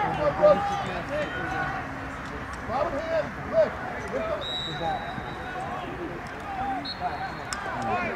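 Overlapping voices of spectators and players shouting and calling across a lacrosse field, with no single clear speaker. A thin, steady high tone sounds for about a second and a half midway and again briefly near the end.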